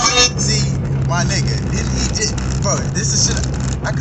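Music cuts off just after the start, leaving the steady low hum of a car's running engine heard inside the cabin, with a few brief voice sounds over it.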